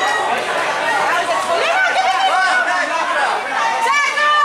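Several high-pitched young voices shouting and calling over one another, girls playing rugby.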